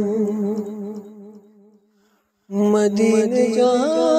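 Naat singing: a long held note with vibrato fades away, then after a short silence the voice comes back in with a new phrase about two and a half seconds in.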